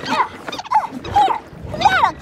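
Cartoon characters' high, squeaky non-word cries: several short yelps that rise and fall in pitch.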